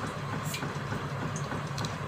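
Steady low background noise, a hum with hiss, with a few faint short ticks.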